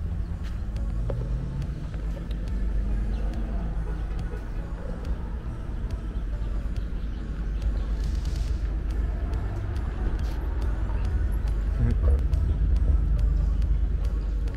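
Car engines running on the track course in the distance over a steady low rumble. One engine revs up and back down a second or so in.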